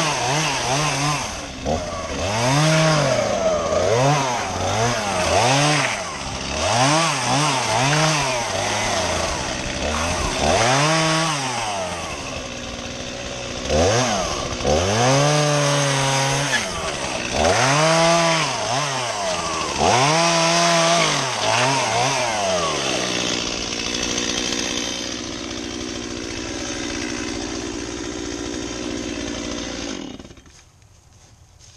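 STIHL chainsaw revved hard over and over in short bursts, one every second or two, as it cuts into a pine log. For the last several seconds it settles to a steady idle.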